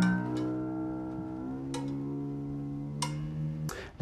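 Acoustic guitar strings, plucked just before, ringing out together and slowly fading as the new string is played to check its tuning against an electronic tuner. There are two faint clicks along the way, and the strings are damped shortly before the end, cutting the sound off.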